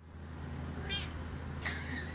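A black-and-white domestic cat meowing twice, two short high-pitched meows, about a second in and near the end, over a low steady background hum.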